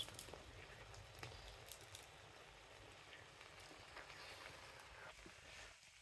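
Faint sizzling and crackling of rice and egg noodles frying in a hot wok, close to silence, with a few scattered small pops.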